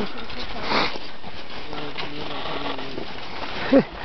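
Indistinct voices of a group talking at a distance over a steady hiss. There is one short noise burst about a second in, and a brief vocal sound near the end.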